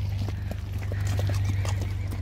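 Horses charging about a grass paddock, hooves thudding in an irregular run of knocks. Wind buffets the microphone throughout.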